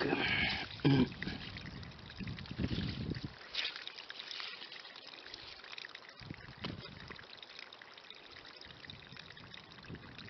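Water trickling through wet gravel in a dug pit. A hand scrapes and knocks stones in the wet grit during the first three seconds, with a sharp knock about a second in. After that the trickle goes on more quietly, with a few single clicks of stone.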